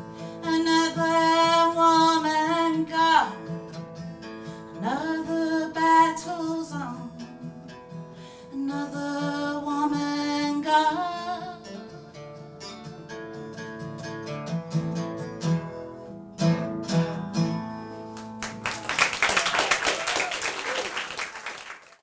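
A woman singing three long held notes over acoustic guitar, then the guitar alone playing the song's closing phrase. About three seconds from the end, audience applause breaks out.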